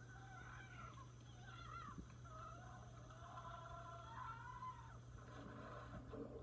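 Faint film soundtrack playing from a television: several wavering, gliding pitched tones over a steady low hum.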